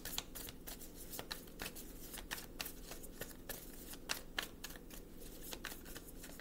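A deck of tarot cards being shuffled by hand: a quick, uneven run of sharp card clicks, several a second.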